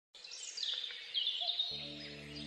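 Small birds singing: repeated quick, falling chirps and trills. Near the end a steady chord of sustained low humming tones comes in.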